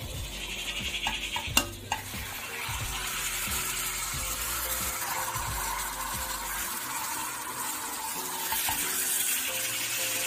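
Whole spice-rubbed chickens frying in oil in a pan, sizzling steadily while a wooden spatula stirs and turns them. A single sharp knock about one and a half seconds in is the loudest sound.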